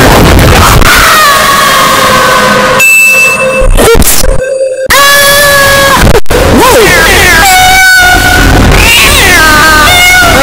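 Heavily distorted, clipped cartoon soundtrack: loud held screams and wailing voice sounds over music, with a brief dropout about four and a half seconds in.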